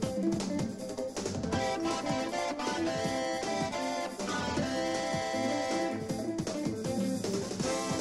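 A jazz-fusion band playing live: keyboards over electric guitar, bass guitar and drums, with a busy, steady groove.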